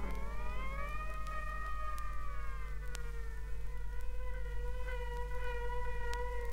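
Experimental 1970s electronic music: one sustained pitched tone with several overtones that bends slowly up and back down in pitch over the first few seconds, then holds steady, over a low steady hum, with a few faint clicks.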